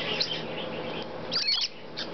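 Triton cockatoo chicks giving short, high, squeaky begging calls with their beaks gaping: a faint one near the start and a louder cluster of squeaks about one and a half seconds in.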